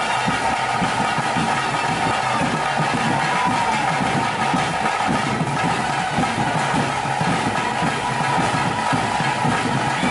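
Loud, continuous ritual Kola music: a sustained, held wind-instrument melody over dense, rapid drumming, accompanying the daiva dance.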